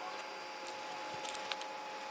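A few faint small clicks, about a second and a half in, as the ball of a tiny 3D-printed nylon maze puzzle is pulled through a hole in its wall with a magnet, over a faint steady hum.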